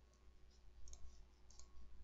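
A few faint computer mouse clicks, scattered about a second and a second and a half in, over a low steady hum.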